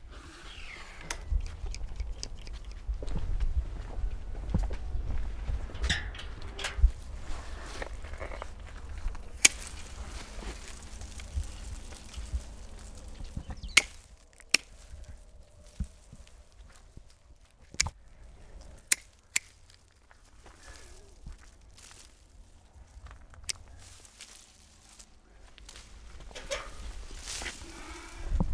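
Pruning shears snipping thin birch twigs: sharp single clicks spaced a second or more apart, most of them in the second half. Under them a low rumble with rustling and footsteps in the first half.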